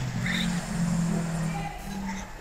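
Stray audio leaking into the video call from a participant's unmuted microphone, which is picking up something being watched: low, held musical tones that step in pitch a few times.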